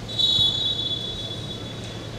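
Referee's whistle blown in one long steady blast, loudest at the start and then held more softly for most of two seconds, authorising the serve.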